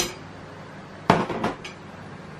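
Metal serving spoon clinking and scraping against a pan and a ceramic plate while liver is dished out: one sharp clink at the start, then a quick cluster of clatters about a second in and one more soon after.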